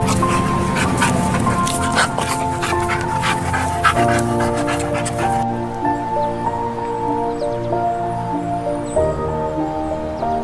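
Background music, with a dog's sounds over it for the first half: a quick run of short, sharp noises that stops abruptly about halfway through, leaving the music alone.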